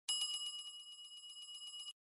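Notification-bell sound effect: a bright bell ring with a fast, even trill. It starts at once, fades a little and cuts off abruptly just before the end.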